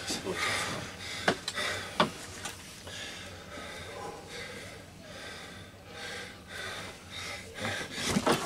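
Strained breathing and low, indistinct voices during an arm-wrestling pull, with two sharp clicks about a second and two seconds in.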